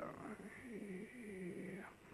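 A man's faint, low voice wavering up and down in pitch, a quiet hum, over a faint steady high-pitched whine.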